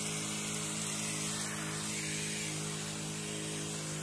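Sprayman double-battery spray pump running with both of its electric motors on, a steady hum, with the hiss of spray from the copper nozzle.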